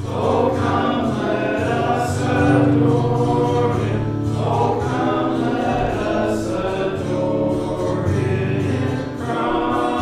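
Congregation singing a hymn together, with held low notes underneath the voices.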